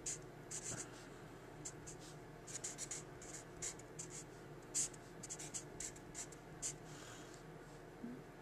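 Sharpie permanent marker writing on paper: many short, faint scratchy strokes of the felt tip across the sheet, irregularly spaced, as letters and symbols are written.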